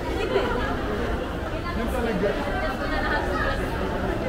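Crowd of shoppers chattering, many voices overlapping into a steady hubbub.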